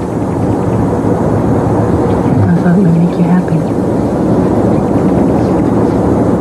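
A steady, dense rushing noise in the background throughout, with a brief murmur of a voice about halfway through.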